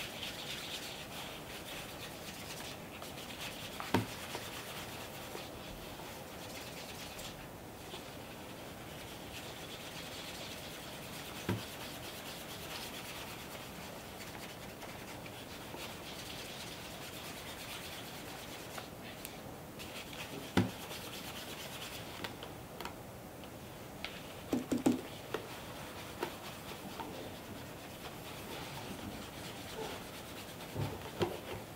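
Cotton chamois rubbing over the waxed leather toe of a dress shoe in a steady soft hiss, buffing off the clouding of a fresh coat of hard mirror-gloss wax polish. A few light knocks from handling the shoe cut in now and then, a short cluster of them near the end.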